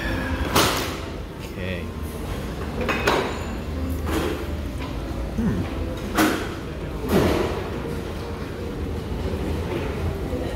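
Restaurant dining-room hubbub of background voices, with four short sharp clicks or knocks close by at the table: about half a second in, at three seconds, at six and at seven.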